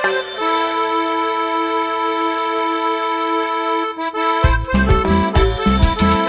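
A live band's electronic keyboard holding one long sustained chord. About four seconds in, the drums and bass come in with a steady dance beat.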